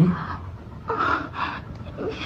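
A person gasping in three short, breathy bursts during sex, the loudest right at the start.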